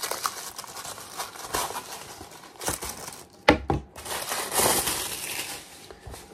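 Cardboard and paper packaging of a tablet case rustling and crinkling as the box is opened and the case pulled out, with one sharp knock about three and a half seconds in.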